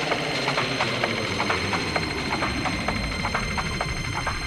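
Electronic dance music in a stripped-back passage: rapid, even percussion ticks over sustained high tones, with little bass until low-end energy starts to build near the end.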